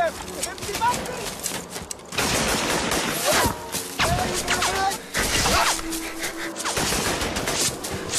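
A fusillade of gunshots, many shots in quick succession, densest about two to three seconds in.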